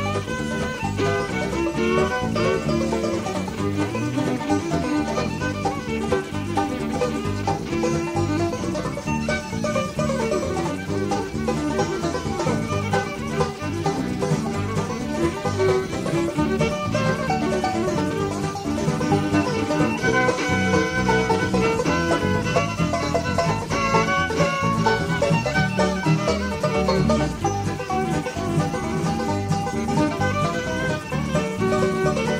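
Live bluegrass band playing an instrumental western swing tune featured on fiddle, backed by five-string banjo, mandolin, guitar and electric bass.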